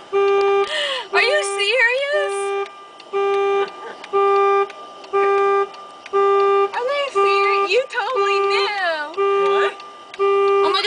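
A car horn sounding in an even pulse, about one honk a second, as a car alarm does. High wavering voices whoop over it twice.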